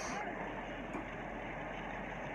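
The tail of a man's shouted "Boom" dies away at the very start, then only low, steady background noise remains.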